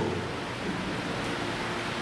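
Steady, even hiss of background room noise with no distinct events.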